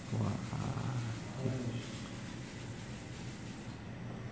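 A person's low, indistinct voice, a quiet murmur, in the first second and a half, then steady room noise.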